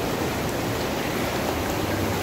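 Hot tub water bubbling and churning from its jets, a steady rushing noise.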